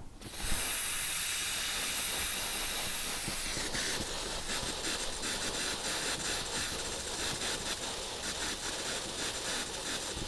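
Compressed air blowing through lawn sprinkler heads, a steady hiss of air and spray that starts about half a second in and turns sputtering from about three and a half seconds on as water spits out with the air. This is a sprinkler blowout: the compressor's air is forcing the water out of the underground lines to winterize the system against freezing.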